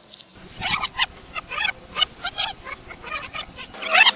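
Audio rewinding at high speed, as a tape-rewind effect: a fast run of short, squeaky, chattering fragments of sped-up voices.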